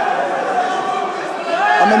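Spectators in a large sports hall shouting encouragement over general crowd chatter, with a man's louder shout coming in near the end.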